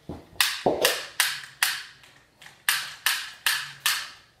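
A rapid series of about ten sharp cracks, each ringing briefly in a small room, in two runs with a short pause near the middle; a couple of duller thuds come in the first second.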